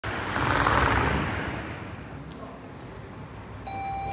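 A vehicle passes on the street, its noise swelling and fading within the first second and a half. Near the end an electronic door-entry chime sounds its first steady note, the start of the two-tone ding-dong of a convenience-store door opening.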